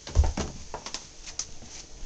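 A child's quick footsteps and knocks from a handheld camera being carried along, with a heavy low bump just after the start, then a run of light taps and knocks.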